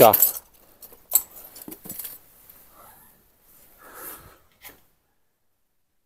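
Rubbish being rummaged through by gloved hands in a dumpster. Plastic bottles and bags shift, and small hard items clink and rattle a few times in the first two seconds. Softer rustles follow, then a second of complete silence near the end.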